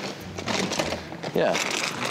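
Clothes hangers sliding and scraping along a rack rail as costumes are pushed aside, with garments rustling, under talk.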